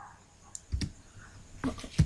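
A few separate computer keyboard keystrokes as code is typed into a text editor.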